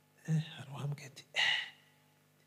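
A man's voice through a microphone: a short untranscribed utterance, its end breathy and whispered.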